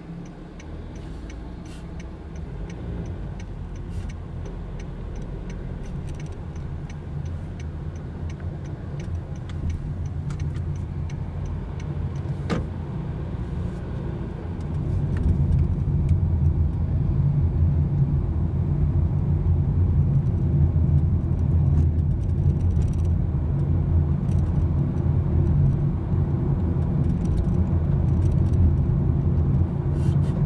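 A car driving through town, heard from inside the cabin: engine and tyre noise that grows louder as the car picks up speed, then holds steady at a higher level from about halfway through.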